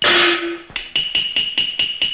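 Cantonese opera percussion: a loud crash that rings briefly, then quick, even strikes at about four or five a second, each with a high ringing tone, leading into the next sung line.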